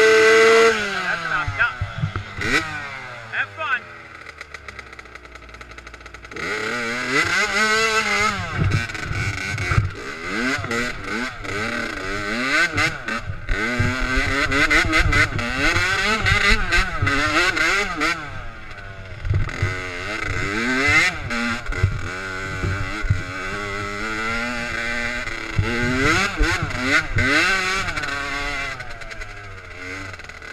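Dirt bike engine revved high, then dropping back to a quiet idle while it is kept running to clear it out. About six seconds in it pulls away, its pitch rising and falling again and again as it is ridden.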